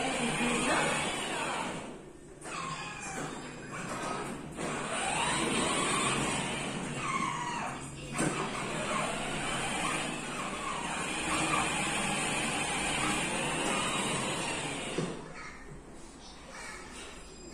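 Voices, a young child's among them, heard on and off with short lulls about two seconds and about eight seconds in.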